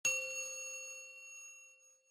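A single bright bell-like chime, struck once and ringing with several clear tones, fading away over about two seconds.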